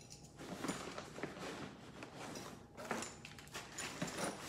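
Rustling of a nylon tactical bag as hands push small items into a pocket, with soft scattered clicks and knocks, a little louder near the end.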